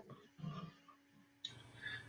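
Near silence, room tone over a video call, with a faint brief low sound about half a second in and a faint click and breath just before speech resumes.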